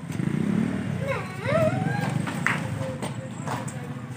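People talking, in words the transcript does not catch, over a steady low rumble, with a couple of short knocks in the second half.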